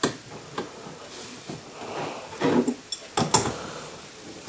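A few light clicks and knocks of handling noise, with a pair of sharper clicks near the end, and a brief murmured voice a little past halfway.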